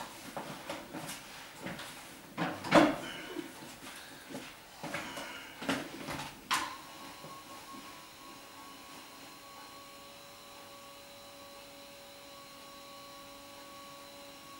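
Rustling and several knocks as a person climbs onto a padded treatment table and settles face down. About halfway through, a click switches on a steady electric hum that carries on.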